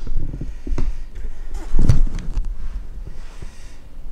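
Camera handling noise: scattered clicks and knocks as the camera is moved and mounted, with a louder thump a little under two seconds in.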